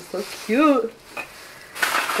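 Plastic packaging crinkling as it is handled, loudest in a burst near the end. A woman's voice gives one short rising-and-falling note about half a second in.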